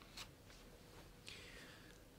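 Near silence: room tone with a faint click a fifth of a second in and a brief, soft rustle past the middle.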